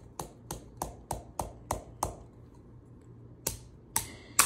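Sharp clicks made by hand at an even pace, about three a second, for about two seconds; after a pause, a few more near the end.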